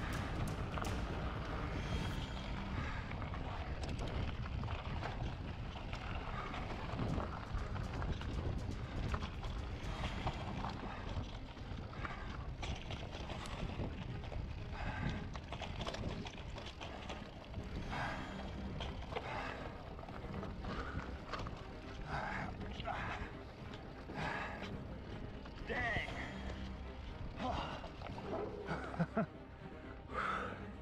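Mountain bike riding fast down a rough, rocky dirt singletrack: steady wind noise buffets the microphone, with frequent clicks and knocks from the tyres, chain and frame rattling over rocks and ruts.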